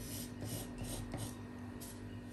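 Faint scratching of a pencil on brown pattern paper, in a run of short strokes as a curved armhole line is drawn, over a steady low hum.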